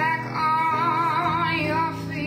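A woman singing a slow blues song, holding a long note with a clear vibrato, over a quieter accompaniment.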